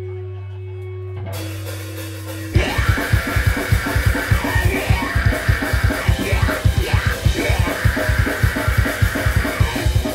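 Live metalcore band. A held low guitar note rings for the first couple of seconds. About two and a half seconds in, the full band comes in loud, with rapid kick-drum hits, distorted guitars and screamed vocals.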